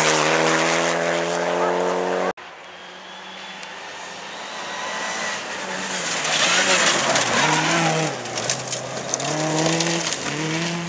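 Rally car engines at racing speed on a gravel stage. First, one car's engine is held at high revs and cuts off abruptly about two seconds in. Then another car's engine approaches and grows louder, its revs rising and dropping through gear changes.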